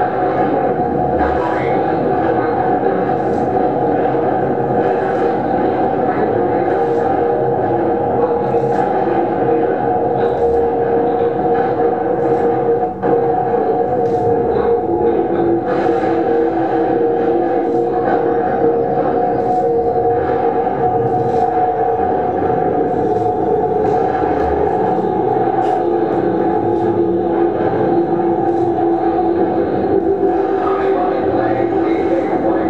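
Experimental drone music played live: a dense, sustained mass of layered steady tones that shifts slowly, with faint clicks about every two seconds and a brief drop-out about 13 s in.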